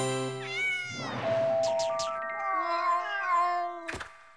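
A cartoon cat's wordless, meow-like voice, wavering up and down in pitch as he explains something without words. A short held music chord ends just after the start.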